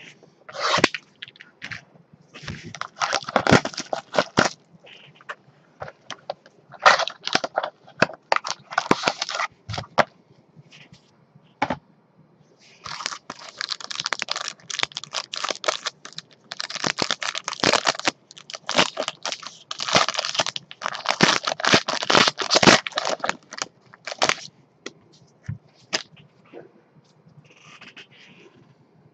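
Plastic wrapping being torn and crinkled and cardboard packaging handled as a sealed trading-card box is opened by gloved hands, in irregular bursts of tearing and rustling. The bursts ease off for a moment about ten seconds in and die away near the end.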